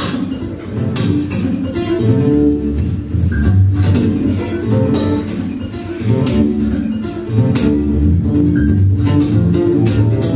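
Solo steel-string acoustic guitar played fingerstyle: a fast boogie with a moving bass line under the melody, broken up by frequent sharp percussive hits on the strings.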